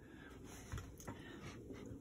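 Quiet room tone with faint handling noise: a couple of soft clicks from a hand working a leak-detector dauber bottle at a stove's gas fitting.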